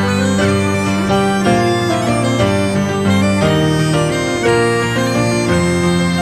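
Instrumental folk waltz: a reedy melody line over low bass notes that change about once a second, played without a break.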